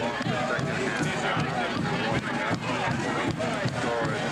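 Several people's voices talking and calling out at once, overlapping and indistinct, with a few short knocks among them.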